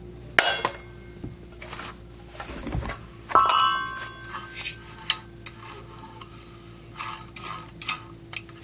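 Sheet-metal and aluminium parts of a vacuum cleaner motor clinking and knocking as it is taken apart with a screwdriver and its fan cover is lifted off. A run of separate clinks, the loudest clank about three and a half seconds in with a brief ring.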